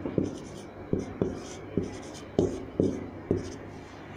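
Marker pen writing on a whiteboard: a string of short strokes and taps, about two a second.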